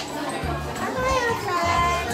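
Young children's voices chattering and calling out in a classroom, with high, sliding pitches.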